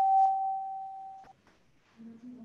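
A steady, high electronic tone, a single pure pitch, that fades away and cuts off about a second and a quarter in, followed by a faint click.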